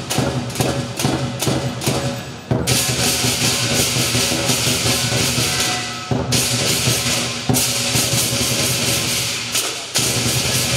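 Live lion dance percussion: a large Chinese drum beating with clashing cymbals and gong. Quick rhythmic strokes in the first couple of seconds give way to a continuous crashing of cymbals, which breaks briefly about six seconds in.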